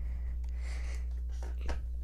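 Faint handling of a small cardboard box, with a light tap near the end as it is set down on the table, over a steady low hum.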